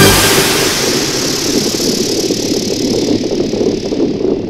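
Synthesizer noise effect: a sudden burst of noise, then a rough rumbling hiss that slowly dies away, the high hiss fading out first, with no clear pitch.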